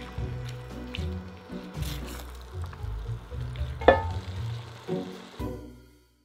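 Tofu and vegetables sizzling in an enamelled pan as a spatula stirs them, under background music, with a sharp clack of the utensil against the pan about four seconds in; it all fades out at the end.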